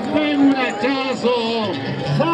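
A man singing a payada, improvised gaucho verse, over the public address, with long held notes.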